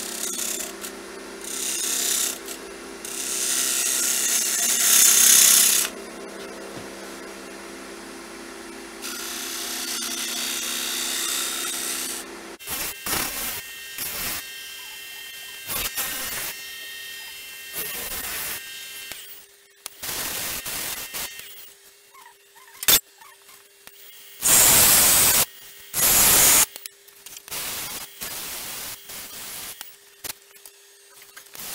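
Wood lathe running while a gouge cuts into a spinning sugar pine blank: loud scraping bursts over the motor's steady hum. After about twelve seconds the hum changes and the cutting comes in shorter, separate bursts.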